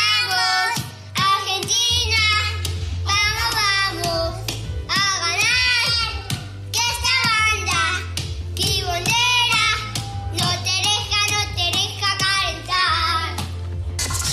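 A young child singing in short, repeated phrases of about a second each, over a steady background music bed.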